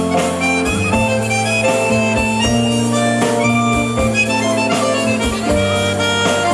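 Accordion playing a slow melody of held notes over electric guitar and drums, as a live band's instrumental break.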